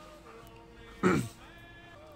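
A short vocal cry about a second in, falling steeply in pitch, over faint sustained music tones.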